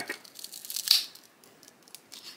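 Small cardboard packet being pulled open: a run of papery rustles and tearing, with the loudest tear about a second in. The packet was glued shut and tears as it is forced open the wrong way.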